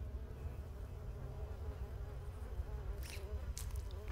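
Low buzzing drone with a wavering pitch over a steady deep rumble, with two brief hisses near the end.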